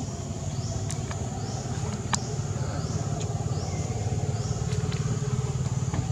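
A steady low motor rumble, like an engine running close by, with a few sharp ticks and a faint high chirp repeating about once a second.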